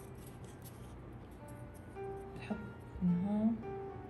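Background music on acoustic guitar, with plucked notes held and ringing.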